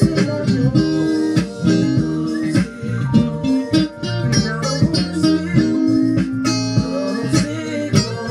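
Stratocaster-style electric guitar playing a melodic line of single notes, with other music and a recurring beat underneath.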